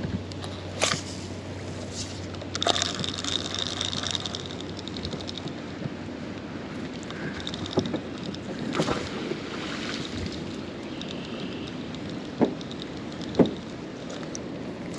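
Water sloshing against a small boat's hull, with a low hum for the first few seconds and a handful of sharp clicks and knocks scattered through.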